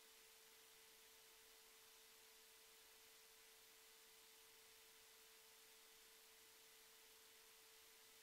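Near silence: faint hiss with a steady low-level tone held throughout.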